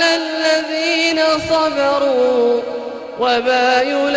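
A man's voice reciting the Quran in a melodic, chanted style: one long drawn-out phrase sliding slowly down in pitch, a short breath about three seconds in, then the next phrase begins.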